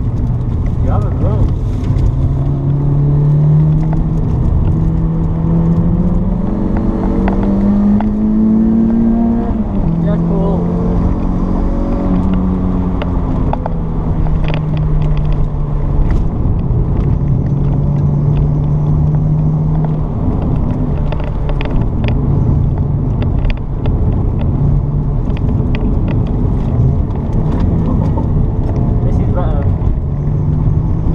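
Renault Sport Clio 182's 2.0-litre four-cylinder engine heard from inside the cabin while being driven hard on track, its pitch climbing for the first nine seconds or so, falling back, holding fairly steady, then climbing again near the end.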